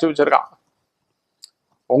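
A man's speaking voice trailing off, then a pause of silence broken only by one faint, brief click, and his voice starting again near the end.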